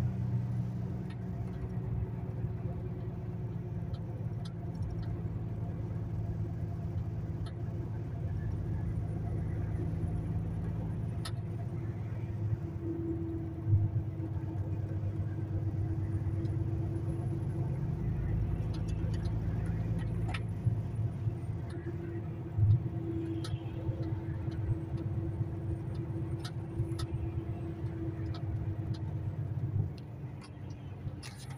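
Truck cab interior on the motorway: the diesel engine runs in a steady low drone with tyre and road noise, and a few short clicks or knocks, the loudest about a third and three-quarters of the way through.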